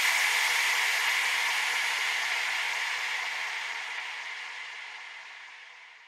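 A hissing white-noise wash fading out steadily over about six seconds: the effect tail at the end of an electronic dance remix track, left after the beat has stopped.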